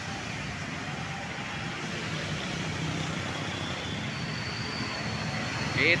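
Steady road-traffic noise from a stream of motorcycles and cars passing close by. A faint, thin, high whine sits over it near the end.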